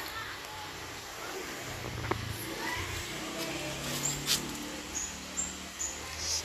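Garden background with short, high bird chirps, several in the second half, over a faint low hum, with a couple of light clicks.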